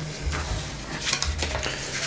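A sheet of acrylic-painted printing paper rustling and crackling as a fold is opened out and the sheet is smoothed flat by hand, with a few sharper crinkles about a second in.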